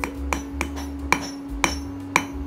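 Steel hand hammer striking a red-hot iron nail on an anvil: about five sharp metallic blows, roughly half a second apart. The hot nail is being forged flat into a letter-opener blade.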